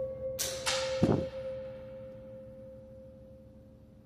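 A sudden sharp crack about half a second in, then a heavier, louder thud about a second in, both ringing out and fading, which the investigator says he did not make. Underneath runs a steady hum of two pure tones.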